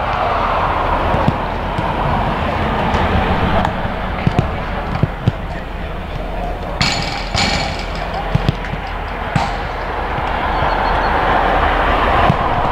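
Footballs being kicked and passed on artificial turf during a warm-up: irregular dull thuds of boot on ball, over a steady background of players' voices.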